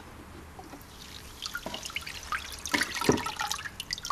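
Water splashing, trickling and dripping as a rusty cast-iron exhaust manifold is lifted out of an electrolysis de-rusting bath, with a few light clicks. It starts quiet and gets busier after about a second and a half.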